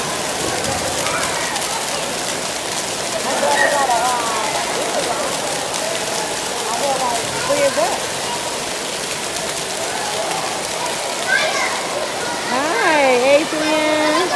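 Water jets of an indoor splash pad spraying down onto a shallow wet floor, a steady hiss of falling water. Children's high voices call and shout over it now and then, most of all near the end.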